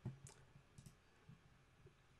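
Near silence with a couple of faint computer mouse clicks in the first second.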